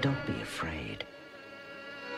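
Breakcore/noise electronic music: a hit at the start followed by buzzy sweeps falling in pitch, a sharp click about a second in, then a quieter held buzzing tone.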